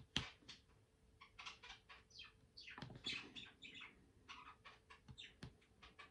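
Pet bird chirping, a run of short faint calls, a few of them dropping in pitch, with occasional light taps.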